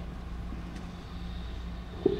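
Steady low hum over faint background noise, with no speech, and a faint single click about three-quarters of a second in.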